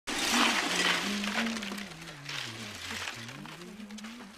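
Ice cubes poured from a bag into a metal tub packed with cans and bottles, clattering and crunching loudly for the first couple of seconds, then trailing off. Music plays underneath.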